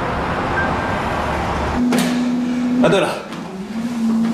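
Steady road and engine noise of a car driving at highway speed, cutting off abruptly about two seconds in. After it come a held low tone and a short burst of voice.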